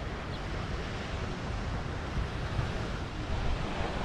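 Steady wash of ocean surf breaking on a sand beach, with wind buffeting the microphone.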